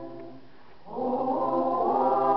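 Small mixed choir singing a Lithuanian song; one phrase fades out, there is a brief pause, and the voices come back in together about a second in.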